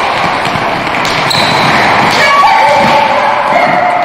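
Futsal game in a sports hall: players and coaches shouting over the steady noise of the hall, with the ball thudding on the wooden floor. A drawn-out shout stands out in the second half.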